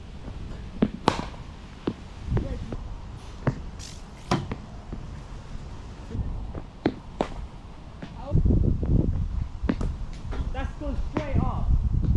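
Scattered sharp knocks of a cricket bat and ball in a practice net, a dozen or so spread over several seconds. About eight seconds in, a low rumble of wind on the microphone.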